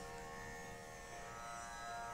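Faint, steady drone of held tones behind the pause in the singing, the pitch accompaniment of Carnatic vocal music.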